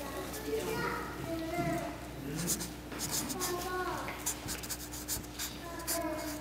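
Red felt-tip marker writing on a card, a string of short scratchy pen strokes starting about two seconds in. Voices talk in the background.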